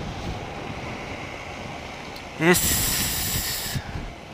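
KTM 790 Duke parallel-twin engine running at low speed with wind noise, heard from a helmet camera. About two and a half seconds in, a burst of hiss starts and lasts a little over a second, then cuts off suddenly.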